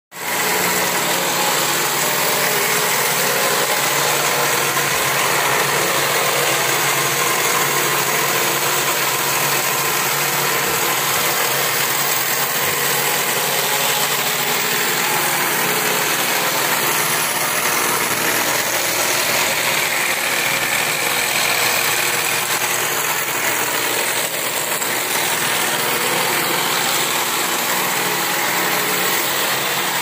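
Cord-making machine on a sewing-machine table running steadily, its electric motor and rotating shaft giving a continuous mechanical hum and rattle.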